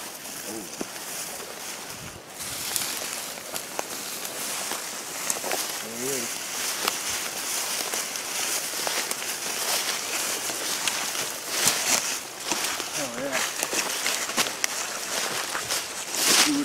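Footsteps and rustling as someone walks through tall, dry weeds and brush, with many small crackles of stems and leaves and the swish of camouflage clothing.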